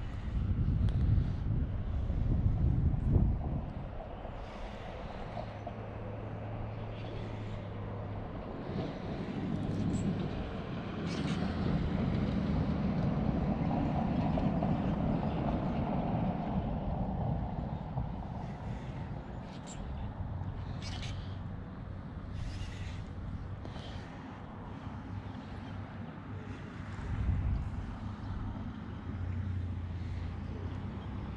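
Road traffic: a vehicle passes about a third of the way in, building and fading over several seconds, with a steady low hum at other times and a heavy low rumble in the first few seconds. A few short, sharp clicks come past the middle.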